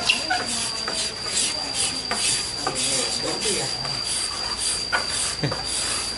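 Carved mun hoa ebony chair parts being sanded by hand: quick, scratchy back-and-forth rubbing strokes on the wood, about two or three a second.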